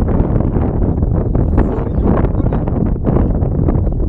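Wind buffeting the microphone: a steady, heavy low rumble of noise.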